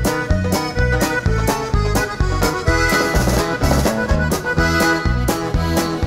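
Norteño band music: an instrumental passage with an accordion melody over a steady dance beat of bass and drums, with no singing.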